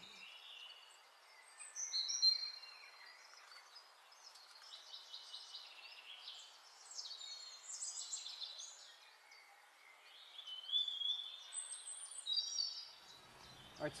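Wild birds singing in a forest: a mix of short, high-pitched chirps and trills, loudest about two seconds in and again near the end.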